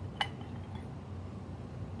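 A single light clink of a small porcelain piece knocked as it is handled, with a brief ring.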